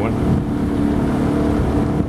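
Small fishing boat's outboard motor running at a steady, even pitch as the boat moves up a narrow creek.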